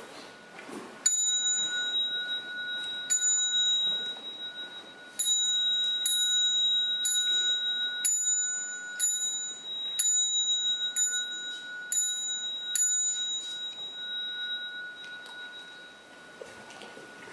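Small bell struck about eleven times, each high, bright strike ringing on and fading. The first strikes come about two seconds apart, then about one a second, with a steady faint high tone beneath.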